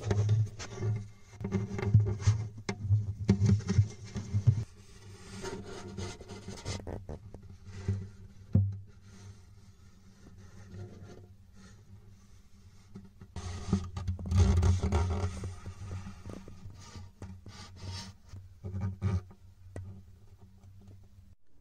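Irregular rubbing and scraping as an endoscope probe is worked around inside an acoustic guitar's body, brushing against the wooden braces and bridge plate. It comes in bouts, quieter for a few seconds in the middle.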